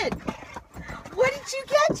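A dog clambering between a car's seats: a quick run of light knocks and scuffles in the first second, then a high excited voice.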